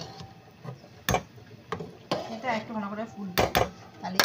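A metal cooking spoon stirring a pot of khichuri in a metal kadai, knocking sharply against the pan a few times.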